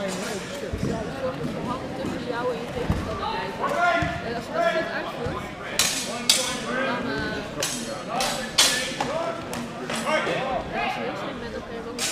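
Steel HEMA training swords clashing in a quick exchange: several sharp strikes between about six and nine seconds in, over the murmur of a crowd in a large hall.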